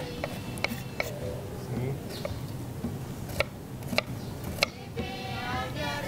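A handful of sharp, irregular knife clicks against a wooden cutting board during food prep, over faint background music; a voice comes in near the end.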